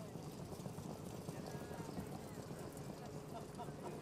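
Faint hoofbeats of standardbred trotters pulling sulkies on the dirt track, over low trackside noise with distant voices.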